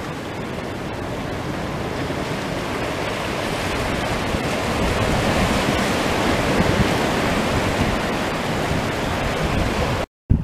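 Ocean surf washing in over a rocky shore: a steady rushing wash that swells gradually toward the middle.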